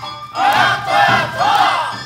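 Awa odori dancers shouting a kakegoe chant together: two drawn-out shouts from many voices, over the festival band's music.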